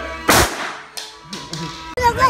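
A single pistol shot about a third of a second in, sharp, with a short ringing tail in the room.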